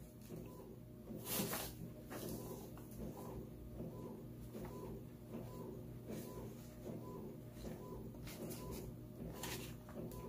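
Faint rustling of sheets of sublimation transfer paper being laid over a shirt and smoothed down by hand, loudest about a second in, over a low steady hum.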